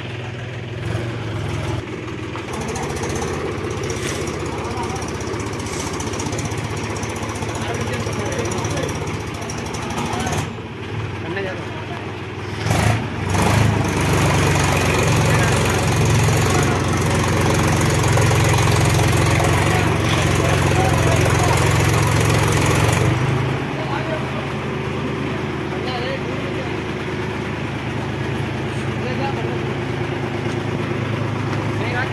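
Mahindra tractor's diesel engine running. About halfway through it takes on a heavier, louder note for roughly ten seconds, then eases back near the end.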